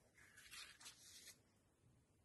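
Near silence with a faint rustle of card and paper being handled and slid on a cutting mat for about the first second, then stillness.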